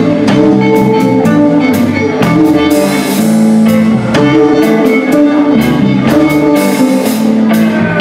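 Live blues band playing an instrumental passage: electric guitars, electric bass and a drum kit keeping a steady beat, with no vocals.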